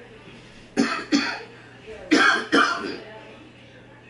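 A man coughing: four loud coughs in two quick pairs, the second pair about a second after the first.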